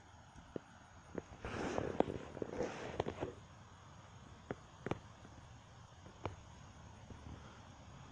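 A rustling noise lasting about two seconds, starting a second and a half in, then a few sharp clicks, over a faint steady outdoor background.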